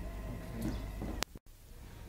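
Background hiss and steady low hum of an old field recording between songs. About a second in, a sharp click and a split second of dead silence mark a join between two recordings.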